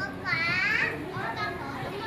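Children's voices: a loud, high-pitched child's call that wavers up and down about a third of a second in, followed by softer talking.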